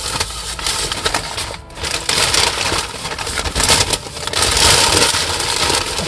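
Paper takeout wrapper rustling and crinkling loudly and irregularly as it is handled close to the microphone.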